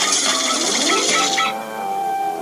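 Quirky logo jingle of synthesized music and cartoon sound effects, with short pitched blips and glides over a hiss. The hiss cuts off about three-quarters of the way in, leaving one held note.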